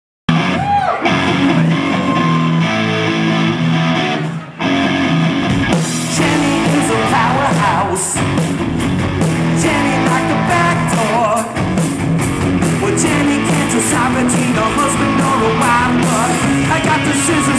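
Live rock band playing loud: electric guitars and bass, with the drums coming in with a steady cymbal beat about six seconds in.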